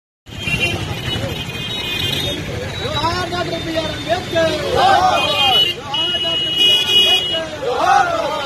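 Busy street noise with steady traffic rumble and vehicle horns sounding several times, over men's raised voices from the crowd in the middle and near the end.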